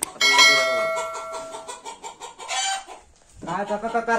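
A bell-like chime, the sound effect of a subscribe-button animation, strikes sharply just after the start and rings on with several steady tones, dying away over about a second and a half. A man starts speaking near the end.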